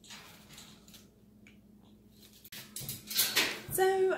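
Umbrella cockatoo picking at a stainless-steel foraging cage stuffed with paper: faint scratchy rustles and small clicks. About halfway through, the sound cuts to louder handling noise, and a woman starts speaking near the end.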